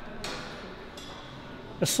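Low gym background noise during a pause in speech, with a faint, briefly ringing high metallic note about halfway through. A man's voice starts again near the end.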